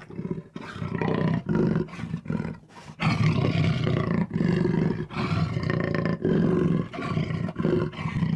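A big cat roaring and growling in a run of repeated, throaty low calls. The calls ease into a brief lull about two to three seconds in, then come back louder and run on.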